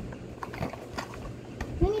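Faint scattered clicks and rustles of a small cardboard toy box being handled and pried open on a wooden table, with a child's voice near the end.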